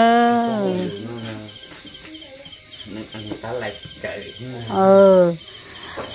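Steady high-pitched insect chorus running throughout, with a person's drawn-out voice at the start and again briefly about five seconds in.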